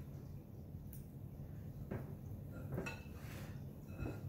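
A metal fork clinking and scraping lightly against a glass mixing bowl, a few faint clinks about a second apart, as a soft cheese filling is scooped out.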